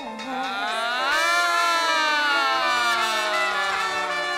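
Live Latin band music: several long held notes that slowly bend and slide in pitch over the band's steady playing.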